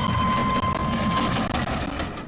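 Steam locomotive sound: a steady whistle blowing over a hiss of steam and a low rumble, the whistle stopping about one and a half seconds in.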